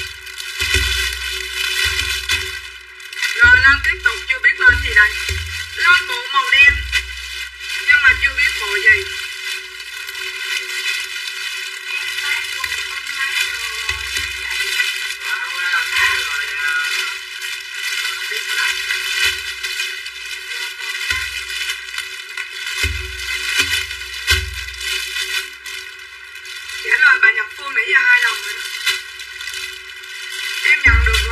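A woman's voice talking over background music, with repeated low bass pulses.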